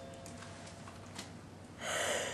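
Quiet room with a few faint clicks, then a person's short, breathy gasp near the end.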